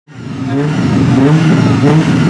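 Peugeot 106 hillclimb car's engine being revved repeatedly at the start line, pitch rising and falling about every half second. The sound fades in at the very beginning.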